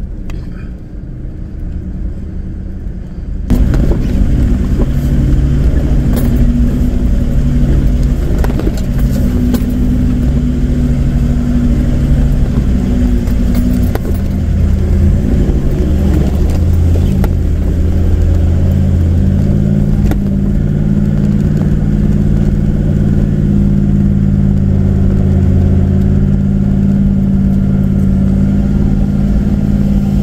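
Toyota LandCruiser 76 Series four-wheel drive's engine pulling steadily under load up a rocky track, heard from inside the cab, with occasional knocks and rattles. It grows suddenly louder about three and a half seconds in, and its pitch shifts a few times as the revs change.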